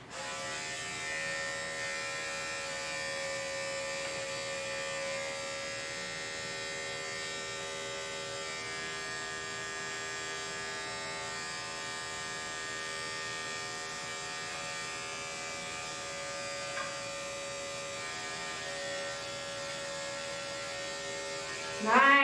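Electric pet clipper with a #40 blade running steadily, a constant hum, as it shaves the pads of a dog's hind paw.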